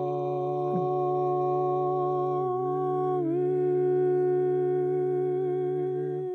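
Background music ending on one long held chord: a steady low drone under a voice holding a sustained note, which dips briefly in pitch about three seconds in.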